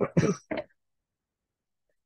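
A man's brief chuckle: three short voiced bursts in the first moment.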